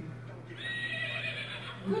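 Recorded horse whinny played from a children's sound book's small button speaker: one high call about a second long.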